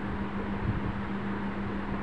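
Steady background hum and hiss with one constant low tone, unchanging throughout.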